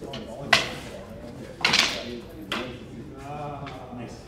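Wooden fighting sticks clacking in a sparring bout: a sharp crack about half a second in, a louder, longer clatter near the two-second mark, and a lighter knock soon after.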